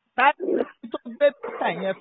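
Only speech: a man talking over a phone line, the sound thin and cut off above the middle of the voice's range.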